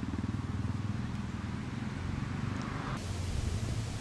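An engine idling steadily, a low, even running sound with a fast regular pulse.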